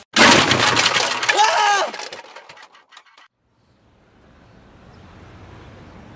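Quadcopter drone crashing: a sudden loud smash with cracking and breaking, then scattered clattering pieces dying away over about three seconds.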